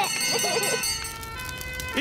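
Cartoon fire engine siren wailing as the fire engine drives along, over a low engine rumble.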